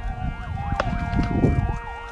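Vehicle siren sounding, its tone sweeping quickly up and down over a steady note, with loud low rumbling noise underneath and a sharp crack just under a second in.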